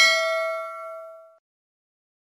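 A single bell-like ding sound effect that rings out and fades away within about a second and a half.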